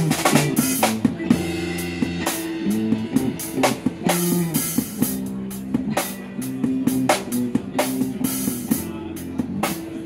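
A small busking band plays an original song: acoustic guitars strum chords over a small drum kit of bass drum, snare and cymbals, which keeps a steady beat throughout.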